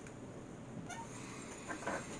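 Faint, short squeaky vocal sounds from a small furry pet: one brief rising squeak about a second in, then a louder little cluster near the end.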